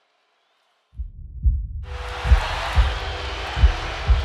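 Silence, then about a second in a deep heartbeat sound effect starts: paired thumps repeating roughly every 1.3 seconds. About two seconds in, a steady rush of arena crowd noise comes in underneath.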